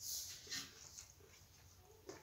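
Faint close-up eating sounds: a short slurp as a handful of rice and potato-pea curry goes into the mouth, then a second wet smack about half a second later and a small click near one second in.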